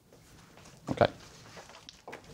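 A man's short, low spoken "okay" about a second in, against faint room tone.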